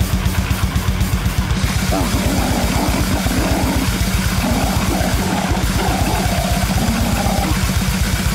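Rock band demo recording with drum kit and guitar playing a fast, even beat. About two seconds in, a wavering higher melody line comes in over the band.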